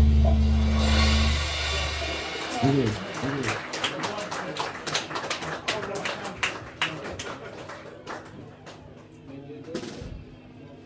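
A live rock band's final chord, with bass and electric guitar, rings out and dies away about two seconds in. Scattered hand claps and a brief voice follow as the song ends.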